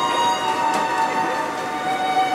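Disney Resort Line monorail pulling into a station, its electric drive whining with a steady tone that slowly falls in pitch as the train slows.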